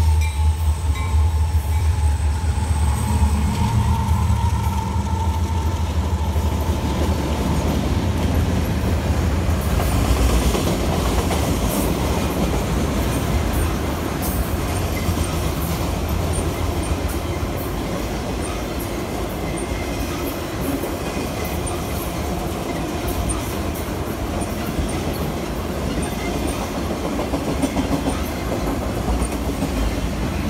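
Long freight train of autorack cars rolling past close by: a steady low rumble and rattle of the cars, with the rhythmic clickety-clack of wheels over rail joints from about ten seconds in.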